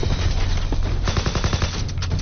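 Automatic rifle fire: rapid shots, densest in a burst about halfway through, over a steady low rumble.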